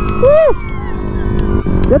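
Suzuki Raider FI 150 motorcycle's single-cylinder engine running steadily at cruising speed, with a low rumble of wind over the microphone. A short vocal sound from the rider comes near the start.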